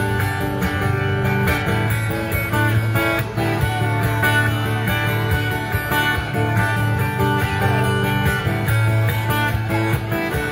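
Acoustic guitar strummed steadily, playing an instrumental passage of a country song with a strong bass line.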